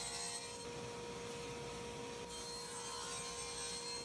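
Grizzly table saw running with its blade cutting through plywood on a crosscut sled: a steady hum with a hiss over it, held at a low level, which cuts off suddenly near the end.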